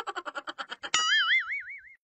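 Cartoon sound effect: a quick run of pitched pulses, about ten a second, fading away, then about a second in a springy tone that warbles up and down several times and dies out.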